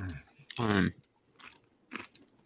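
Someone biting and chewing a raw jalapeño pepper: a few faint, short crunches, with a brief vocal sound about half a second in.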